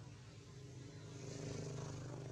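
A faint, steady engine hum from a motor vehicle, growing louder about halfway through.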